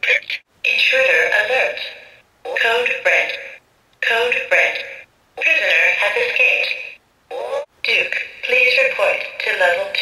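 Recorded voice phrases and sound effects from the G.I. Joe Rise of Cobra Pit playset's electronic command center, played through its small speaker as its buttons are pressed: several short clips in a row with brief gaps between them.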